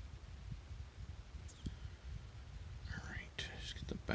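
Low background rumble with a few faint ticks, then near the end a man's quiet, breathy, whispered words.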